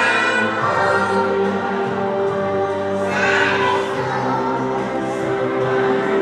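A slow song with voices singing long held notes, choir-like, the accompaniment to a stage performance.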